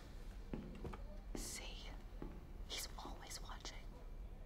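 Quiet whispered speech, its hissing consonants standing out in short bursts, over a low steady hum.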